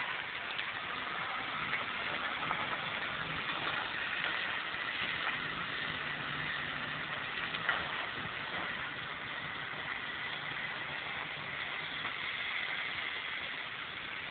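Suzuki Vitara 4x4's engine running at low, steady revs as it drives along quarry tracks, over a steady hiss. The engine note fades in the last few seconds, and there is a sharp click about eight seconds in.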